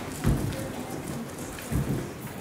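Rustling, crackling handling noise at a pulpit microphone, with two dull thumps, one shortly after the start and one near the end.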